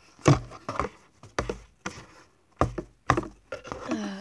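A plastic toy horse figure knocking and scraping against the sides of a cardboard box, a series of irregular knocks.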